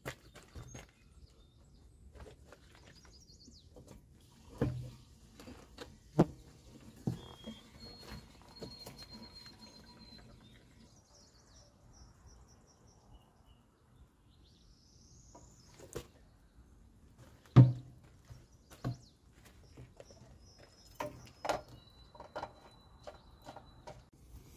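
Scattered clunks and knocks from a plastic jerry can being handled while diesel is poured into a skid-steer loader's fuel tank, the loudest a sharp knock about two-thirds of the way through. Birds chirp in the background.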